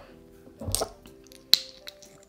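Faint background music with a few light clicks over it, the sharpest about one and a half seconds in.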